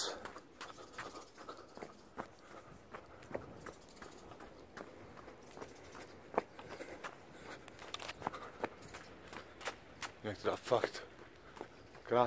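Footsteps of a person running on a sandy dirt track: a run of quiet, short thuds, with a brief bit of voice about ten seconds in.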